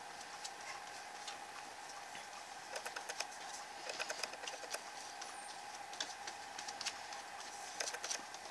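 Faint scattered ticks and light taps of a hand tool working over a paper journal page, in small clusters, over a steady faint hum.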